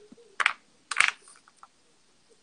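Pen nib scratching across paper in two short strokes, about half a second apart, as letters are written.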